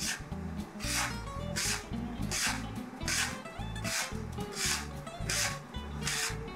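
A plastic bench scraper scraping and mixing semolina and bread flour on a wooden cutting board: a soft rasp repeating about every three-quarters of a second, over background music.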